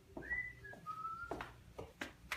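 A person whistling a short phrase of three notes, each lower than the last, followed by two sharp footfalls.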